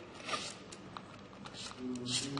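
A hand screwdriver turning a small screw into a robot's chassis, making short rasping scrapes about half a second in and again near the end, with a few light clicks between.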